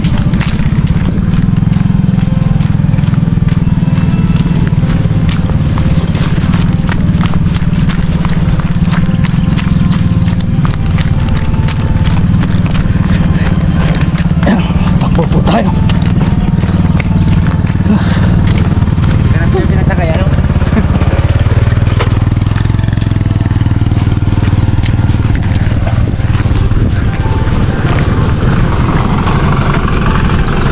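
Motorcycle engine running steadily while riding, with a passenger aboard, and wind buffeting the microphone.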